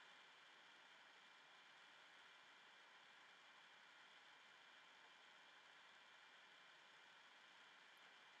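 Near silence: room tone with a faint steady hiss.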